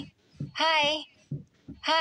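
A high-pitched cartoon voice repeating a drawn-out "hi" with a wavering pitch, about once a second. Faint lower voice fragments sit in the gaps between.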